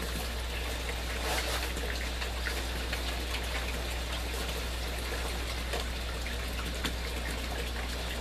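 Water trickling and splashing steadily down through aquaponic grow towers, with a constant low hum beneath and a few faint ticks.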